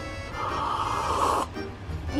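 A person slurping a sip of hot coffee from a mug, one airy draw lasting about a second that cuts off sharply, over background music.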